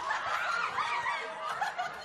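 A group of people laughing and chuckling, many voices overlapping.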